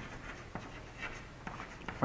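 Chalk writing on a chalkboard: faint taps and scratches as letters are written out.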